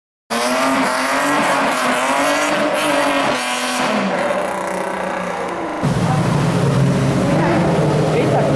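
Car tyres squealing in high, wavering, gliding tones over engine noise. About six seconds in the sound changes suddenly to a deeper, steady car engine rumble.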